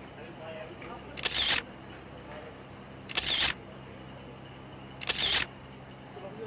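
A short, noisy burst repeats at an even pace about every two seconds, three times, each lasting under half a second, over a quiet steady background.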